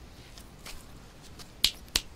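Two sharp finger snaps in quick succession near the end, with a few fainter clicks before them.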